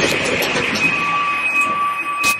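Horror-trailer sound design: a rushing, rumbling noise, joined about a second in by two steady high tones that break off and return.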